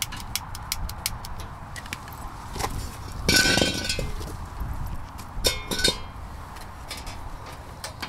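A blue bottled-gas cylinder being handled and its valve turned on: scattered clinks and clicks, then a loud hiss of gas about three seconds in, lasting under a second, and a second short hiss about two seconds later.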